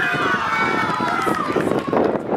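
Several young voices shouting at once during a street football game, drawn-out calls that overlap for the first second and a half, with the scuffing of running feet on asphalt underneath.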